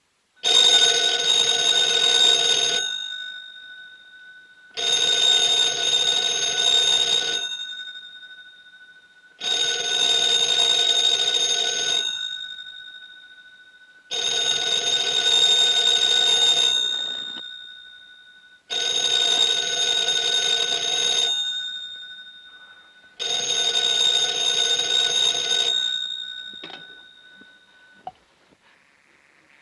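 Desk telephone bell ringing six times, each ring about two and a half seconds with about two-second gaps, then cut off with a click near the end as the handset is lifted.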